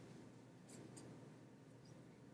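Near silence: room tone, with a few faint soft clicks about a second in.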